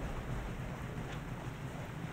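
Steady low rumbling noise with a faint hiss, outdoor ambience with no distinct event.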